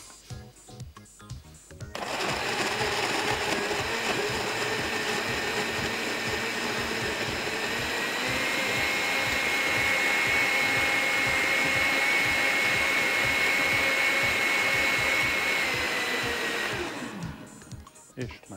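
Countertop blender with a glass jug puréeing fruit chunks in blackcurrant juice. The motor starts about two seconds in and runs steadily. Its pitch rises slightly about halfway through, and it winds down just before the end.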